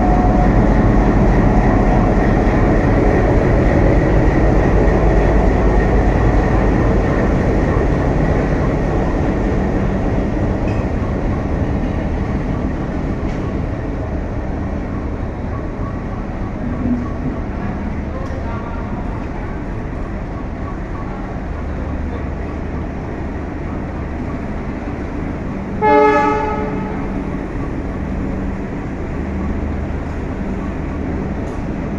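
An Alco WDM-3A diesel locomotive passes close by with its engine running. The rumble fades over the first half as it moves on, and the steady rolling of the passenger coaches follows. A brief, loud pitched blast sounds near the end.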